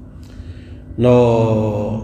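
A man's voice, after a short pause, draws out one long syllable in a chanting tone, starting about a second in and sinking slightly in pitch.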